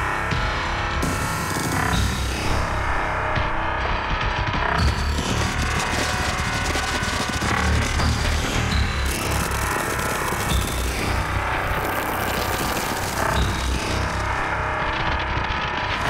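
Bass-heavy electronic dance music from a DJ mix, playing continuously at a steady level.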